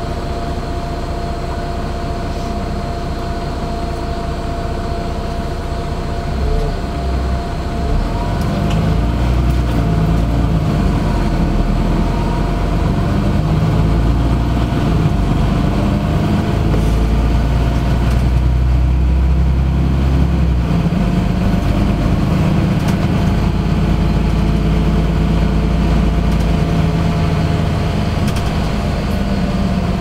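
Inside a LiAZ-5292.65 city bus: the engine runs at a low idle with a steady high whine over it. About seven seconds in, the bus pulls away and the low engine and road rumble grows louder, then stays steady while it drives.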